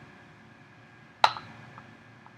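A single sharp metallic click from steel dissecting scissors, a little past halfway, with a brief ring after it, over a faint steady room hum.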